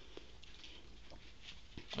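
Quiet room with faint rustles and a few soft ticks: a pet ferret sniffing at a hand and shifting about on bedding.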